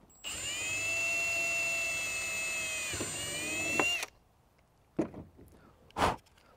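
Cordless drill running steadily for about four seconds as it bores a quarter-inch hole in the alarm's plastic housing, its pitch dipping briefly near the end before it stops suddenly. A couple of small knocks follow.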